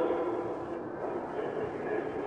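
Steady, featureless background hiss of an old tape recording, with the last of a man's voice dying away at the very start.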